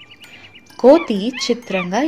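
An animated character's high voice starts about a second in, sliding up and down in pitch. Before it, only a few faint high tinkling notes.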